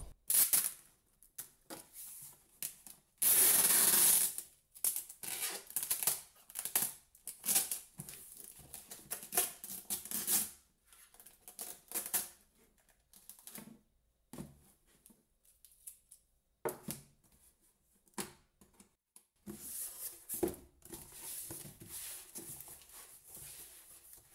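A cardboard parcel being handled and sealed with brown packing tape: scattered rustles, scrapes and knocks of cardboard, with a loud rasp of about a second a few seconds in, and tape being pulled off the roll and pressed along the box.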